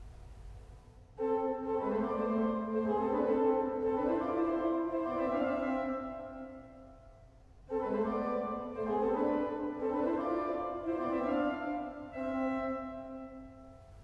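Pipe organ playing the same short passage twice, each time for about five seconds, with stepping held notes in both hands. The first playing fades away in the room's reverberation before the second starts. It is a rhythmic practice pattern meant to make the hands land together on the big beats and show up rushing notes.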